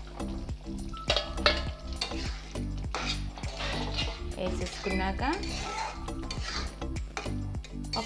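Steel ladle scraping and clinking against a metal kadai and a steel plate as fried paneer cubes are pushed off the plate into thick gravy and stirred in. There are repeated sharp clicks, thickest about a second in.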